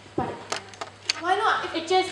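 Indistinct voices speaking on stage, with two sharp clicks about half a second and a second in.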